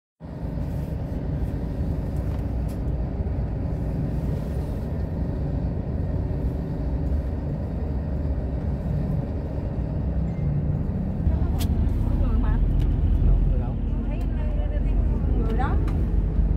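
Steady low engine and road rumble heard from inside a moving bus, growing louder a little past the middle, with a few sharp clicks or rattles. People talk in the last few seconds.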